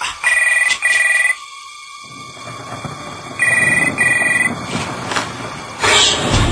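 Telephone ringing twice with a double ring (ring-ring, pause, ring-ring), the pairs about three seconds apart. A low rumbling haze builds underneath from about two seconds in, and a loud hit comes at the very end.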